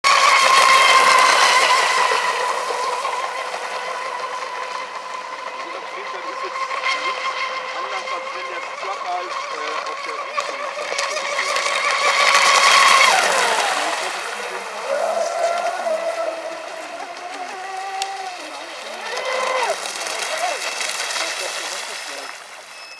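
Electric RC round-nose speedboat with a Lehner 22xx brushless motor on an 8S pack and a 46 mm-class prop, running at full throttle with a steady high-pitched whine and spray hiss. About 13 s in the whine falls away as the throttle is cut, then comes back lower at part throttle, with a short burst of throttle near the end before the level drops as the boat slows.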